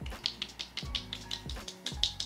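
Fingertips patting cream onto facial skin in quick light taps, several a second, over quiet background music.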